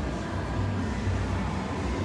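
Shopping-mall atrium ambience: a steady low hum with faint background music.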